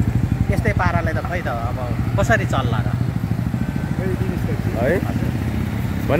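A motorcycle engine running as a steady low drone of street traffic, under a man talking.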